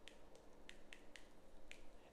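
Dry-erase marker writing on a whiteboard: faint short ticks, about six in two seconds, as the pen tip strokes and taps the board.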